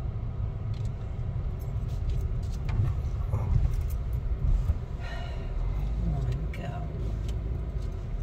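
Car cabin noise while driving slowly: a steady low engine and road rumble, with faint indistinct voices in the middle.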